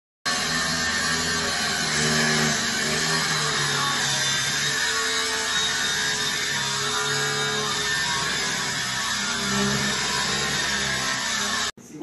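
Angle grinder cutting into metal, throwing sparks: a loud, steady grinding noise that starts abruptly and cuts off suddenly near the end.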